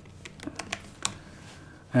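Laptop keyboard typing: about half a dozen separate key taps spread over two seconds.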